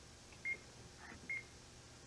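Two short, faint, high-pitched electronic beeps, a little under a second apart, over a quiet studio.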